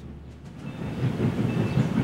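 A moving train's rumble, added as a sound effect, growing louder over the two seconds.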